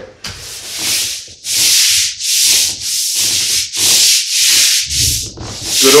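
Long-handled stiff scrub brush scrubbing the grout lines of a ceramic tile floor. It works in repeated back-and-forth strokes, about eight rasping strokes at roughly one and a half a second.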